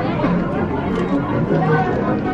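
Indistinct chatter of several people's voices, overlapping, with no clear words.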